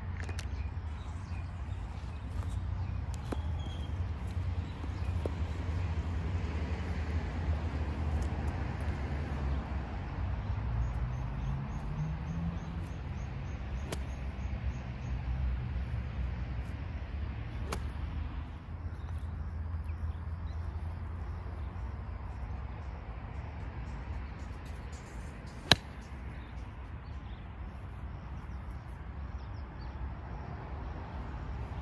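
A single sharp click of a golf wedge striking a Titleist Pro V1 ball about three-quarters of the way through, the loudest sound, over a steady low rumble.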